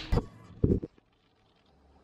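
A few short knocks and bumps of the camera being handled, then about a second of silence, then a faint low hum begins near the end.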